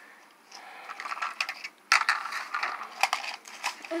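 Plastic toy figures being handled and knocked against a concrete floor: scattered clicks and clatters with some rustling, the sharpest click about halfway through and a quick run of clicks near the end.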